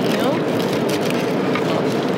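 Steady cabin noise of a passenger jet in flight: the constant rush of engine and airflow.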